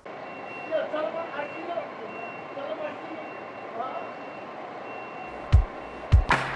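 Street-ambience interlude: a truck's reversing alarm beeping at a steady, even pace over a hum of traffic, with faint voices. Near the end a kick drum comes back in as the beat resumes.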